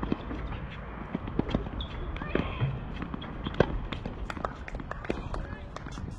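Scattered sharp pops of tennis balls being struck and bouncing on hard courts, at irregular intervals, over faint background voices.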